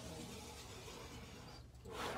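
Rotary cutter rolling through cotton fabric along the edge of an acrylic quilting ruler onto a self-healing cutting mat: a faint, steady hiss lasting about a second and a half, a little louder near the end.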